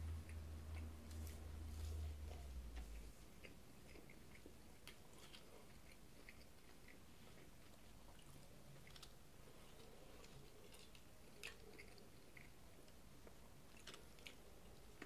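A person quietly chewing a mouthful of fried chicken sandwich, with faint scattered clicks of the mouth. A low hum stops about three seconds in.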